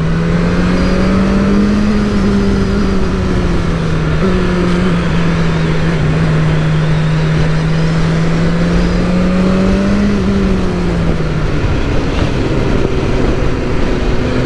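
BMW S1000R's inline-four engine running at steady part-throttle on the road, its note wavering a little, then dropping lower about eleven seconds in as the bike slows. Wind noise runs under the engine throughout.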